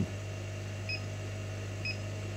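Two short, faint electronic beeps about a second apart from a laser cutter's control-panel keypad as its buttons are pressed, over a steady low hum.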